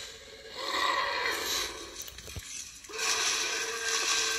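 Movie soundtrack of a rainstorm dinosaur-attack scene, heard through a laptop speaker: rain noise and creature and effects sounds, swelling about a second in, dropping briefly, then louder again from about three seconds on.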